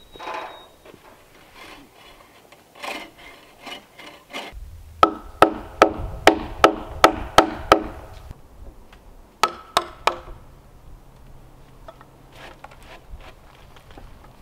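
Wooden log beam scraping and knocking as it is shifted on the frame. Then comes a quick run of about nine hammer blows, roughly two and a half a second, each with a short ring, and two more blows a couple of seconds later.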